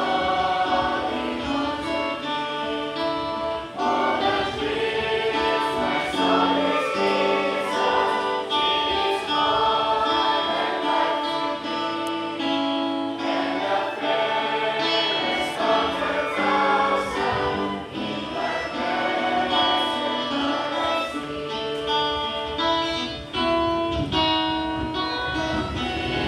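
A group of voices singing a Christian worship song together, with held notes and no break.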